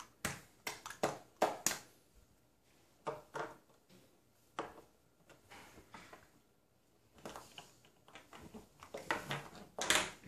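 Small plastic toy teacups, saucers and teapot being picked up and set down on a table: irregular light clicks and clacks, a few at a time, with a denser clatter near the end.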